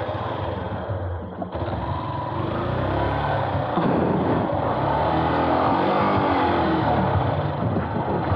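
Yamaha YTX 125's single-cylinder four-stroke engine running at low speed, its pitch rising and falling with the throttle as the bike rolls along a dirt path.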